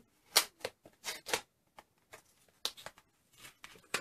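A small paper envelope being handled and opened by hand: several short, crisp paper rustles and snaps, with quiet gaps between them.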